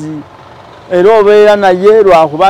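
A man's voice speaking: a pause of just under a second with only faint background noise, then his speech resumes about a second in.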